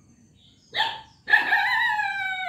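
A rooster crowing: a short first note, then a long wavering note that slowly falls in pitch.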